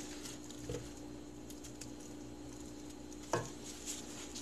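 Quiet scooping of cooked stir-fried vegetables with a wooden spoon from a metal pot, with soft ticks and one sharper tap near the end, over a steady low hum.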